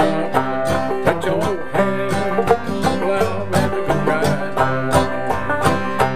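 Clawhammer banjo and acoustic guitar playing an old-time spiritual tune together, the banjo's bright plucked notes falling in a steady, syncopated rhythm over the guitar's backing chords.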